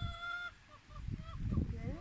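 Rooster crowing: the long held final note of a crow ends about a quarter of the way in, followed by a few short, softer calls.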